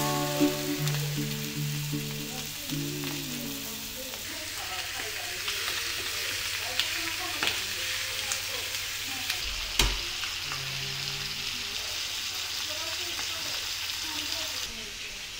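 Chicken pieces sizzling as they pan-fry in a skillet, with scattered light clicks of metal tongs turning them and one thump just before ten seconds in. Music fades out over the first few seconds.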